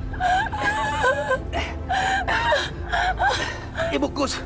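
A woman crying: a string of high-pitched, wavering sobs broken by gasps.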